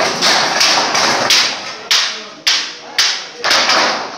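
Corrugated metal sheets banging and rattling as they are handled into place against a pipe frame: about eight sharp knocks at uneven spacing, each with a rattling, ringing decay.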